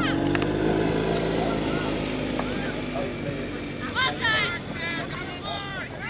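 A vehicle engine hums steadily for the first three seconds or so, then fades. About four seconds in and again near the end, high-pitched voices shout.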